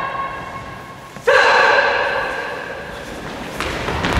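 A loud, drawn-out vocal shout held on one pitch. It starts suddenly just over a second in and fades over about two seconds, echoing in a large hall; the tail of an earlier held shout is dying away at the start.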